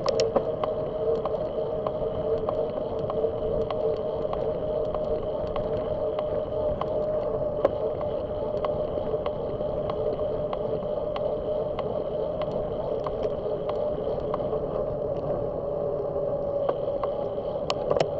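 Riding noise of a bicycle on asphalt: a steady hum of tyres and wind, with a light regular click about twice a second.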